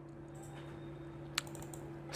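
A single computer mouse click about one and a half seconds in, over a faint, steady low hum.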